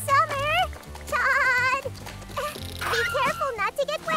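Cartoon character voice sounds without words over soft background music: a quivering bleat-like call, then a longer held one with a steady tremble, then short gliding vocal sounds near the end.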